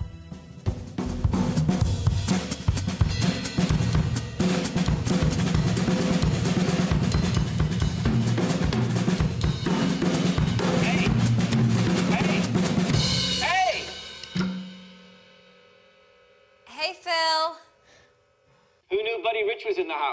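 A drum kit played fast and hard, with snare, bass drum and cymbal hits and rolls, for about fourteen seconds. It then stops and rings out.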